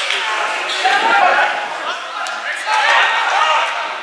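Footballers shouting calls to one another across the pitch during play, their voices carrying and echoing in the open ground, with the odd thud of the ball being kicked.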